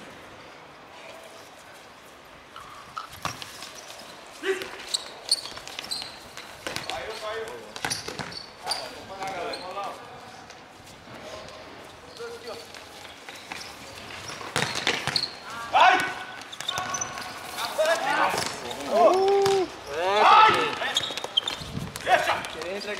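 A futsal ball being kicked and bouncing on a hard court, with sharp knocks every few seconds, among players' shouts and calls. The shouting gets louder in the last few seconds.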